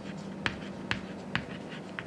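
Chalk writing on a chalkboard: the chalk strikes and scrapes the board in sharp taps, about one every half second.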